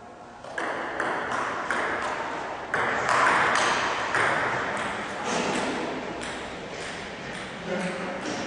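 Table tennis rally: the celluloid-type ball clicking off bats and table about two to three times a second, each hit ringing out in the reverberant hall.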